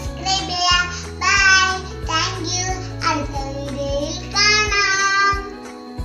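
A child's voice singing over background music, with several long held notes that waver in pitch; the singing stops near the end while the music continues.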